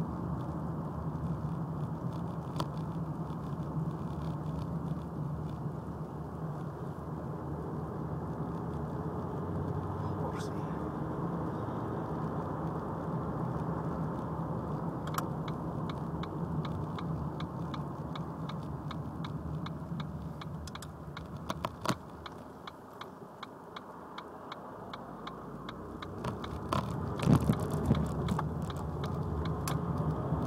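Ford Mondeo Mk3 on the move, its engine and road noise heard from inside the cabin as a steady low drone. It eases off a little over two-thirds of the way in and builds again near the end, with a few sharp clicks among it.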